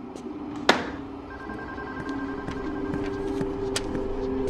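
A sharp clack about a second in, as a desk telephone handset is put down, followed by a soft music score of steady held tones with a few faint clicks.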